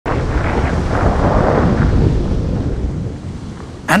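A loud, low rushing rumble of churned water as a large anaconda lunges along the riverbed underwater, stirring up silt. The rumble fades away over the last second or so.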